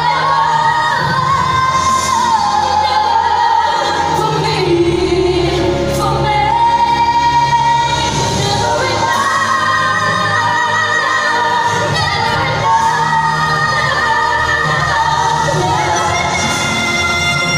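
Female vocal group singing a pop ballad live over backing music, with long held notes.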